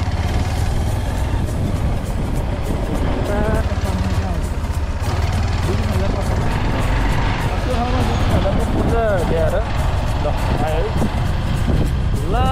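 Motorcycle engine running steadily while riding, with heavy wind rumble on the camera microphone; a voice or tune rises and falls over it in the second half.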